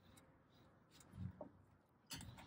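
Near silence, with one faint, brief low sound a little over a second in.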